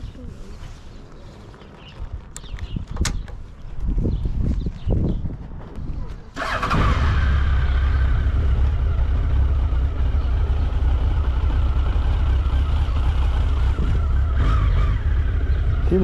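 Honda X4 motorcycle's inline-four engine starting about six seconds in, after a few clicks and low thumps, then idling steadily.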